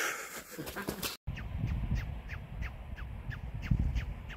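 A run of short, high calls, each sliding down in pitch, about three a second, over a low rumbling noise. The sound cuts out briefly about a second in.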